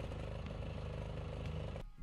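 ITC 7800 AVR diesel generator running steadily under the load of charging the battery bank, a low even hum that cuts off abruptly near the end.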